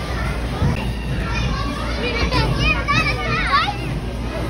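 Children playing and calling out, high-pitched voices rising and falling in pitch, busiest in the second half, over a steady low hum of a large indoor room.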